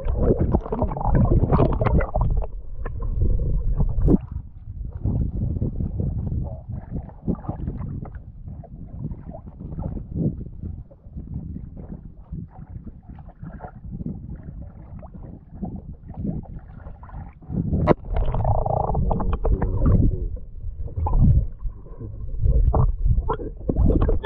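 Sea water sloshing and gurgling around a camera as it is dipped under the surface beside a wooden outrigger boat's hull and lifted out again: muffled underwater rumble with irregular splashes and knocks. It is louder near the start and again in the last third.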